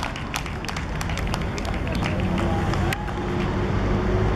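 Distant voices of young footballers calling on an outdoor pitch, over a steady low rumble, with scattered light clicks.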